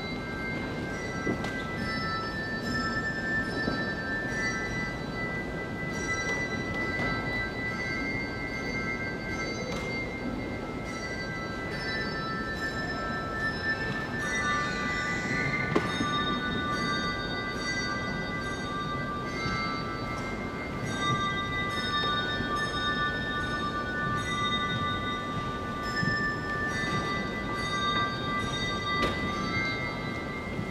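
Instrumental church music of high, bell-like ringing notes, several sounding together and each held for a second or more, entering one after another over a soft, steady low wash.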